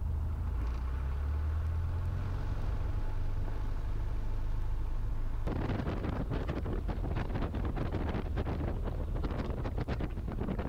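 The Ercoupe's Continental O-200 engine runs at low taxi power with a steady low drone. About halfway through the sound changes abruptly to a rough, gusty rush of wind on the microphone over the engine.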